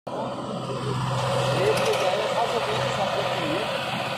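Swaraj 735 FE tractor's three-cylinder diesel engine running steadily under load as it hauls a fully loaded soil trolley. Faint voices can be heard over it.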